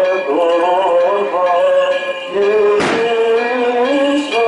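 Men's voices chanting a Greek Orthodox hymn in held, gliding notes. A single sharp crack cuts across the singing about three seconds in.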